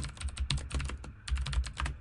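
Computer keyboard typing quickly: a rapid run of keystrokes with a brief pause about a second in.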